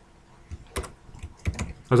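Computer keyboard being typed on: several separate keystrokes spread over a couple of seconds as a line of code is rewritten.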